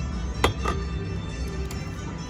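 Casino slot-machine music and electronic tones, with a sharp click about half a second in as a paper cash-out ticket is pushed into the machine's bill acceptor slot.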